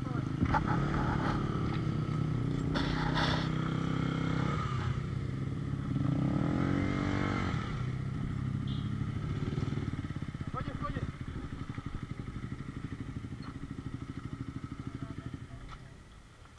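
Motorcycle engine running, revved up and back down once about six seconds in, then running more quietly over the last few seconds.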